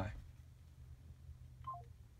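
A phone's short three-note falling beep, the call-ended tone, about one and a half seconds in, over a low steady hum.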